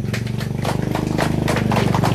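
A small engine running with a rapid, even pulse over a low hum, growing slightly louder.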